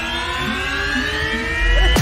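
A steadily rising synthesized tone with many overtones, a film-score riser sound effect, climbing slowly in pitch. It ends in a deep low boom near the end.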